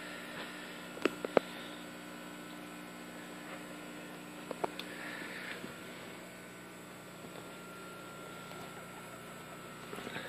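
Steady electrical hum of running aquarium equipment, with a few short clicks about a second in and again a few seconds later.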